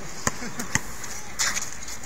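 A basketball knocking twice, about half a second apart, against a hard surface, with faint voices around it.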